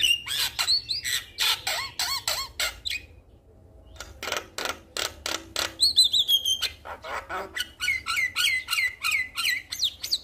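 Male Javan myna calling: rapid harsh clicking notes mixed with wavering, gliding whistles. There is a brief lull about three seconds in, and a run of repeated arched notes near the end.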